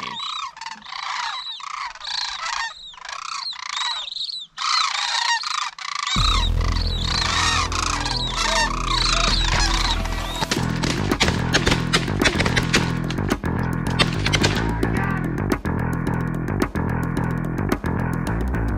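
A flock of sandhill cranes calling, many rolling, trilled calls overlapping one another. About six seconds in, music with a heavy bass beat comes in; the crane calls fade under it and the music takes over by about ten seconds.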